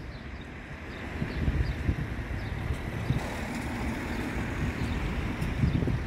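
Steady low outdoor rumble, typical of distant traffic, with wind noise on the microphone.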